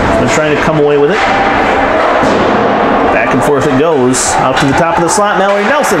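Ice hockey rink ambience during play: people's voices calling out across the arena, with several sharp clacks of sticks and puck against the ice and boards.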